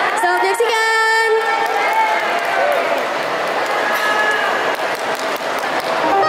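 Crowd noise and indistinct voices in a large, echoing mall atrium, with a voice calling out at the start.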